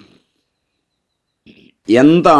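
A pause in a man's speech: near silence with two faint, short mouth sounds, then his voice resumes just before the end.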